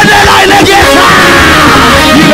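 Loud live worship music with singing, and a long high yell over it in the second half that slides slightly down in pitch.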